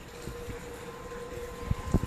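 A steady faint hum over light background noise, with a few soft knocks near the end.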